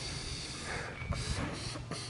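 A man breathing slowly and audibly, two soft breaths, as he settles his nerves before a first skydive, over a steady background hiss.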